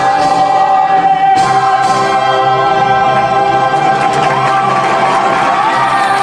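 A woman belting a single sustained G4 in musical-theatre style, held steadily without a break, over musical accompaniment.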